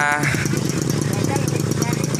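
Small motorcycle engine idling with a rapid, steady putter.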